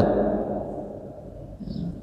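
A pause in a man's speech: room tone with a steady low hum, his last words fading away over the first second, and a faint short sound near the end.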